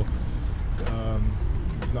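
Steady low outdoor rumble under a pause in a man's talk, with a short voiced sound from him about a second in and speech resuming at the very end.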